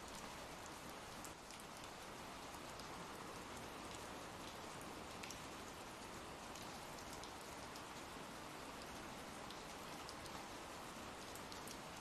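Faint, steady rain sound effect: an even hiss of rainfall with occasional single drops ticking through it.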